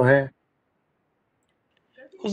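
A man's speaking voice finishing a word at the very start, then dead silence, broken only by a faint click near the end.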